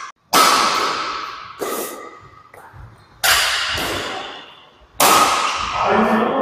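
Badminton rackets striking a shuttlecock in a rally: four sharp hits about a second and a half apart, each ringing out in the echo of a large sports hall.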